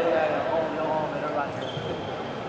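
People's voices calling out and chattering in a large sports hall, over a steady background hubbub, with a brief high squeak near the end.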